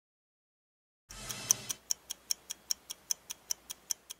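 Silence for about a second, then a brief low hum and a run of quick, even stopwatch ticks, about five a second: a ticking sound effect for a title card.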